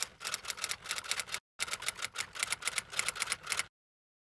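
Typewriter key-clicks sound effect, a rapid even run of about seven clicks a second, set to a caption typing itself out letter by letter. It breaks off briefly about a second and a half in and stops shortly before the end.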